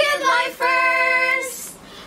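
Young girls' voices singing out a greeting: a quick rising call, then one long held note for about a second that fades out before the end.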